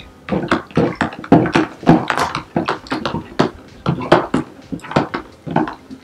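A spoon stirring liquid Jello in a plastic container, clicking and scraping against the sides several times a second in an irregular rhythm. The gelatin mix is being stirred until it dissolves.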